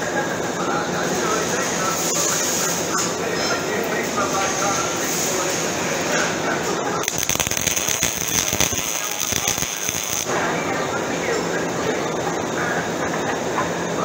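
Welding arc crackling steadily for about three seconds, starting about seven seconds in and cutting off abruptly.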